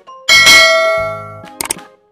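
A bright bell-like ding sound effect that strikes once about a third of a second in and rings out, fading over about a second. Near the end come a few quick mouse-click sound effects, over light background music.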